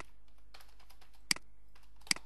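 Clicks from operating a computer: one sharp click about a second and a quarter in, another right at the start and a few faint ones, over a low steady electrical hum.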